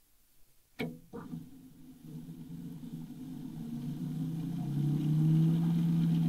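Two sharp clicks, then a steady low machine hum that grows louder over several seconds.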